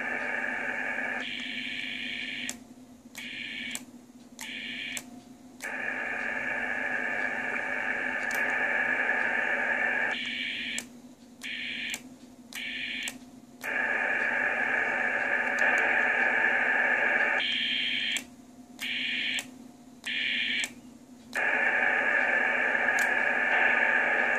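Receiver hiss and band noise from an Icom HF transceiver's speaker. It changes character and cuts out briefly several times, in clusters of three short dropouts, as the radio is stepped from band to band.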